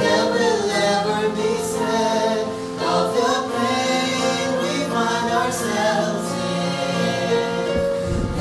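A woman and a man singing a gospel song together into one microphone, their voices amplified through the church sound system.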